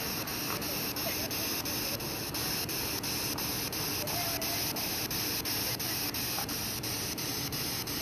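Spirit box sweeping through radio stations: steady static hiss, chopped by regular ticks about five times a second, with a few faint fragments of sound caught in the noise.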